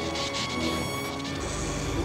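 Cartoon crash and rumble sound effects as a building shakes, with a deep rumble building about halfway through, over an orchestral cartoon score.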